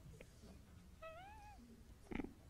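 Near silence: room tone, with one faint short squeal that rises and then falls about a second in.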